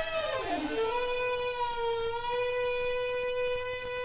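Saxophone holding a long, steady note with the drums gone: the pitch slides down at the start, then jumps up about a second in and is held.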